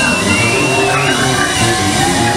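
Live jazz-funk band playing: drum kit and bass under a high sustained lead line that slides up into its notes.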